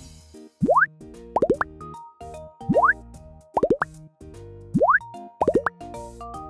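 Cartoon bloop sound effects, each a quick rising pitch. They come in three rounds, about two seconds apart, each a longer rise followed by three short ones, as the spiky germs are cleaned away. Light children's background music plays under them.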